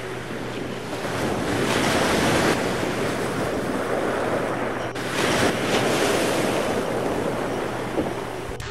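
Wind noise on the microphone over rushing surf and spray, swelling louder about two seconds in and again about five seconds in.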